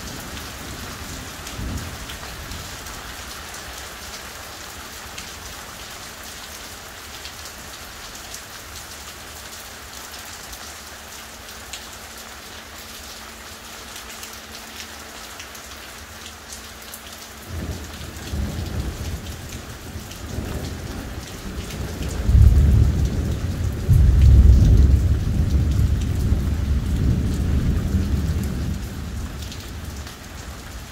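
Steady hard rain with a thunderstorm overhead: a short low rumble about two seconds in, then a long rolling peal of thunder that starts past the halfway mark, is loudest near the end, and dies away.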